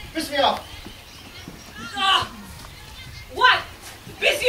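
Three short, high-pitched calls from voices, each falling in pitch: one near the start, one about two seconds in, and one shortly before the end.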